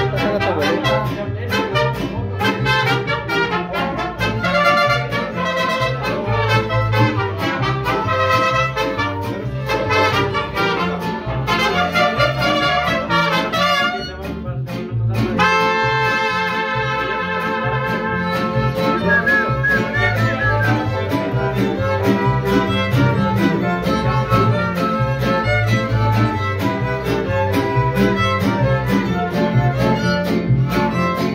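Live mariachi band playing: trumpets and violins carry the melody over strummed guitars and a pulsing guitarrón bass. About fourteen seconds in the music briefly drops, then comes back with long held notes.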